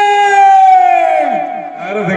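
A male folk singer holding one long, high sung note through a microphone and PA, the pitch sliding down before it breaks off about a second and a half in, in the drawn-out style of Rajasthani Teja Gayan.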